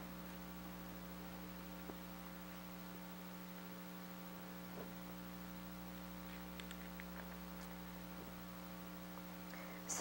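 Steady electrical mains hum, a stack of constant tones, with a few faint soft rustles of paper pages being handled.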